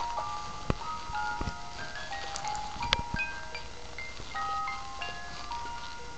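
A toy doll's electronic lullaby: a high-pitched chiming tune of single held notes, stepping up and down. A few sharp knocks sound over it, three of them in the first half.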